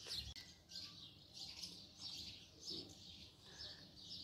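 Small nesting birds chirping, a faint, busy run of short high twittering calls, several a second.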